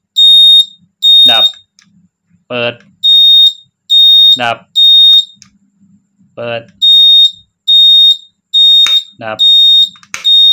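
Keeway Superlight 200 motorcycle's turn-signal beeper sounding a high-pitched beep about every 0.8 s while the right indicator flashes on the newly fitted relay. It stops for a second or two when the indicator is cancelled and starts again when it is switched back on, twice over.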